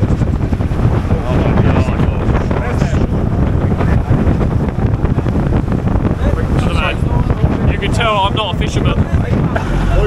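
Wind buffeting the microphone over the rush and splash of water as a small boat pounds through choppy sea, with spray coming over the side. Brief voices and laughter break through a few times.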